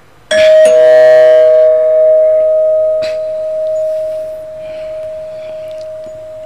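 Two-tone ding-dong chime: a higher note then a lower one struck in quick succession, the higher note ringing on and fading slowly over several seconds.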